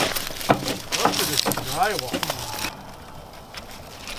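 Crunching and scraping of charred debris and ash as gloved hands dig through burned rubble, with a low voice briefly murmuring. It dies down to quiet outdoor background about two and a half seconds in.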